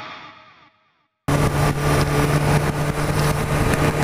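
Rock guitar music fades out, then after a moment of silence a motorcycle engine runs steadily at cruising speed on the road, with wind noise on the onboard microphone.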